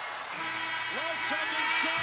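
Basketball arena's end-of-game horn sounding as the clock expires: a steady low buzz starting about half a second in and lasting about two seconds, heard over crowd noise and a commentator's voice from the broadcast.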